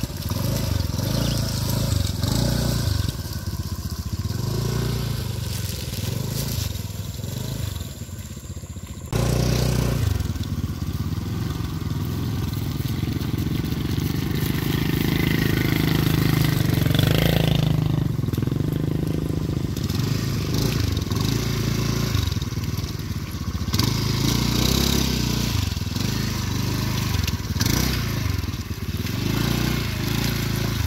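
Small motorcycle engines running at low speed as they ride through deep, wet mud. About nine seconds in, the sound changes abruptly, then the engine noise continues louder and steady.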